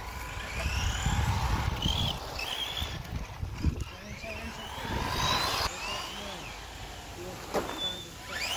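Electric 1:10 scale Tamiya TT-01/TT-02 RC cars running on tarmac. Their motors and gears whine, rising and falling in pitch as the cars accelerate and slow, over a low rumble of tyres and wind.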